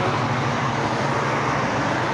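Steady road traffic noise: an even rush of passing vehicles on the street.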